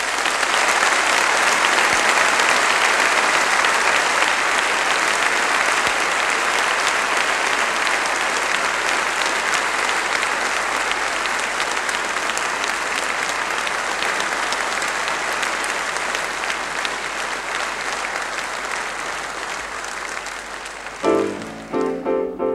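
Audience applauding, steady dense clapping that eases off slowly over about twenty seconds. A solo piano starts playing near the end.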